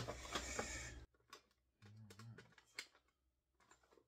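Cardboard product boxes handled on a table: a brief rustling scrape at the start, then scattered light clicks and taps.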